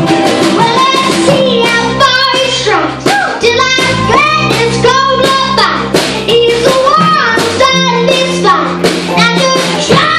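Live acoustic band music with a young girl singing lead, backed by guitars, an upright bass and a small drum kit.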